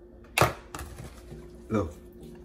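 An ice cube set down on a granite countertop with one sharp clack, followed by a few fainter knocks.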